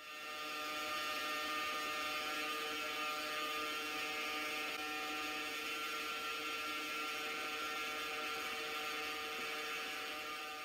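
The Ingenuity Mars helicopter's coaxial rotors spinning in a vacuum test chamber on Earth at Mars-like low pressure: a steady whirring hum with several held tones, fading in at the start.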